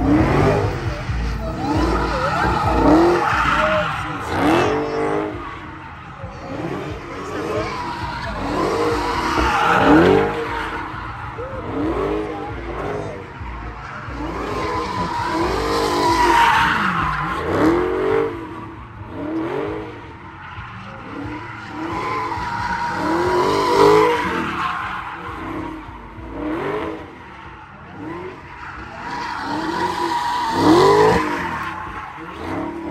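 A Dodge Charger doing donuts, its tires squealing steadily while the engine is revved up and down over and over, about once every second and a half. The sound swells and fades as the car circles.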